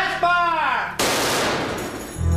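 A .50-caliber machine gun fires a short burst about a second in: a sudden loud blast that fades away over most of a second. Just before it comes a brief voice-like call that rises and falls in pitch.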